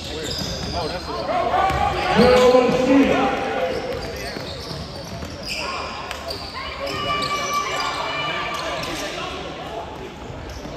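A basketball bouncing on a hardwood gym floor during play, with brief high sneaker squeaks and players and spectators shouting. The shouting is loudest between about two and three and a half seconds in, and the gym's echo is on everything.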